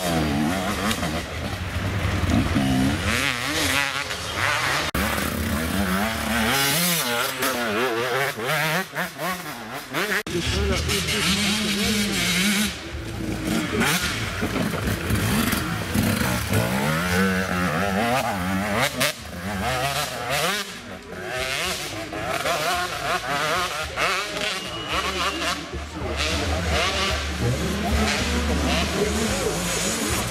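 Enduro motorcycles revving hard as they pass one after another on a dirt forest track, the engine pitch rising and falling repeatedly, with spectators' voices mixed in.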